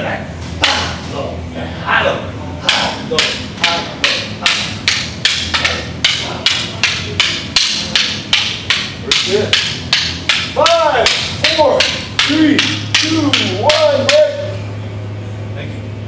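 Wooden practice sticks clacking together in a fast, even rhythm as two partners run a single stick weave drill, striking high and low in turn. The clacks stop shortly before the end.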